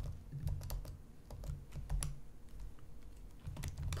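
Typing on a computer keyboard: an irregular series of light key clicks.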